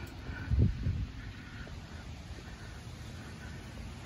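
Outdoor yard ambience as a phone is carried on foot. Soft low thumps come about half a second in, over a steady low rumble, with faint distant bird calls.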